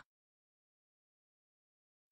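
Silence: a dead-quiet gap in the audio with no sound at all.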